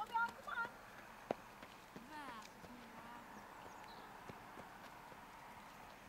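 Faint, distant voices of people talking over a quiet outdoor background, with a single sharp click about a second in.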